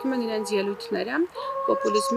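A person speaking, the voice's pitch holding flat and then jumping in steps.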